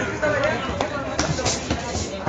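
Boxing gloves smacking against gloves and headguards during an amateur bout: about three sharp hits in the second second. A background of voices from ringside runs under them.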